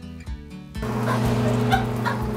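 Light background music with plucked notes. Just under a second in, a steady low hum with a loud hiss comes in and holds.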